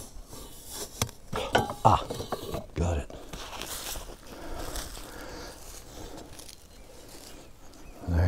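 Knocks and light metallic clinks as a cast-aluminum ant-nest cast is handled in its sandy pit, followed by a soft scraping rustle of sand and soil as the cast is drawn up out of the ground.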